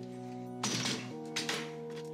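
Background music with held chords, over a folding metal step stool being opened and set down on a hard floor, with two short clacks a little over half a second apart.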